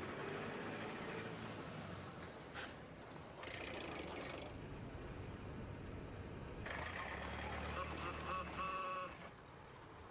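Early motor car running along a street, its engine a steady low rumble, with people's voices in the background. Near the end there is a brief pitched sound over a heavier rumble.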